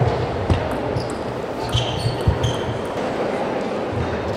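Table tennis rally: the celluloid-type ball knocked back and forth with sharp, irregular clicks of bat and table, alongside a few short high squeaks.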